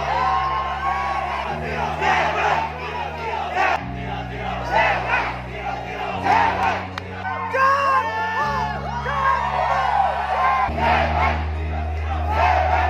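An audience cheering, whooping and shouting over dance music that has a heavy bass line changing note every couple of seconds.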